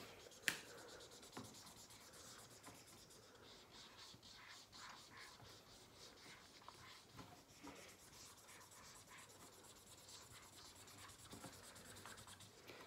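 Faint, irregular scratching and rubbing of a whiteboard marker colouring in on a whiteboard, with a single sharp click about half a second in.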